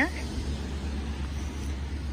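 Steady low rumble with a faint hiss of outdoor background noise, even and unchanging, with no distinct events.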